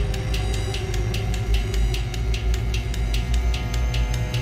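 Dark, suspenseful background music: a low rumble under held tones, with a steady ticking beat of about three to four ticks a second.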